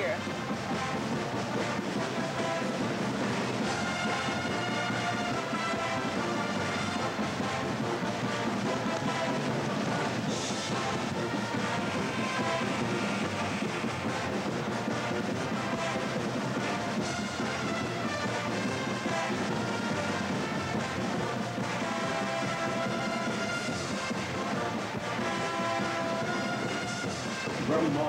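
Brass band music playing steadily, with crowd noise beneath it.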